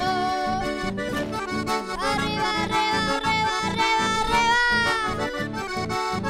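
Chamamé played on accordion, its melody held and sliding between notes, over an acoustic guitar keeping a steady rhythm underneath. It is an instrumental passage with no singing.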